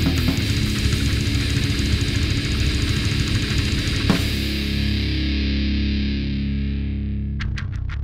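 Heavy metal band playing distorted electric guitars, bass and drums. Dense playing gives way, about halfway through, to one accented hit and a held distorted chord left ringing and fading. Near the end a new riff starts with quick, even strokes.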